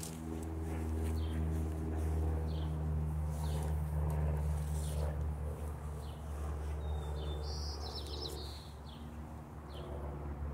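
Small birds chirping outdoors: short high chirps about once a second, with a brighter, longer call a little past seven seconds in. Under them runs a steady low droning hum, the loudest sound throughout.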